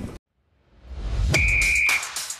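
TV show transition sting: after a brief drop to silence, a rising whoosh swells into a sharp hit with a high, steady whistle-like tone held for about half a second.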